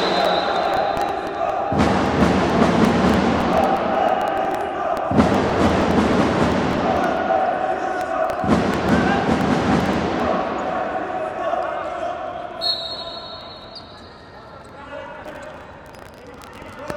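Arena sound at an indoor futsal match: spectators' and players' voices shouting and chanting, echoing in the hall, with thuds of the ball on the court. The noise fades down over the last few seconds.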